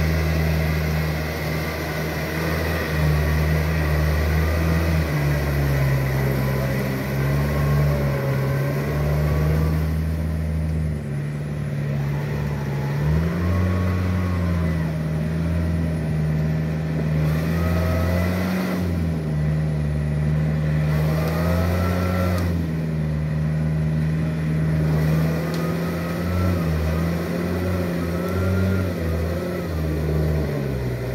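Diesel farm tractor engine running under load while pulling a rotary tiller through a rice paddy, its pitch wavering up and down as the load changes.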